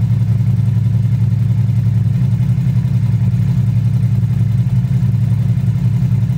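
Ducati Multistrada V4 Pikes Peak's 1158 cc V4 engine idling steadily, run after an oil change to circulate the fresh oil before the level is rechecked.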